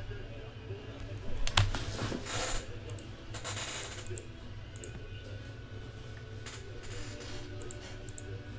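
Computer keyboard typing in scattered bursts, with a few sharp clicks, over a low steady hum.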